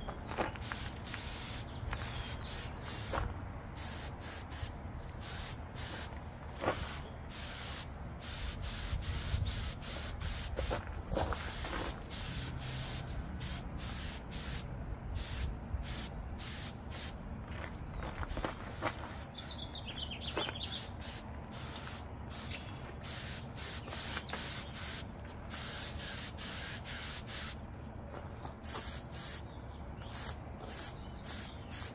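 Air-powered paint spray gun hissing in many short bursts as the trigger is pulled and released, laying paint onto a steel mower deck. Under it, a steady low rumble of wind on the microphone.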